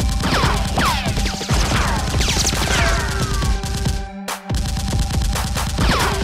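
Action background music with a steady beat, overlaid with rapid movie-style gunfire sound effects and falling whizzing tones. The sound drops out briefly about four seconds in, then resumes.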